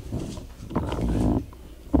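A child's wordless vocal sound, about half a second long, near the middle.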